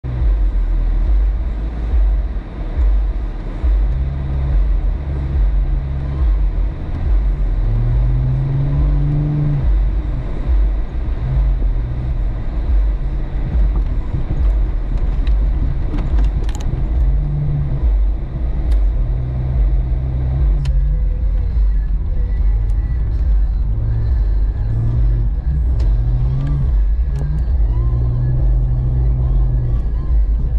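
Jeep Cherokee XJ engine and road noise heard from inside the cab while driving on snowy streets: a steady low rumble with the engine note rising and falling repeatedly as it accelerates and shifts, and a few sharp clicks.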